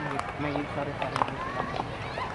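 Faint background voices of people talking nearby, with a few soft knocks.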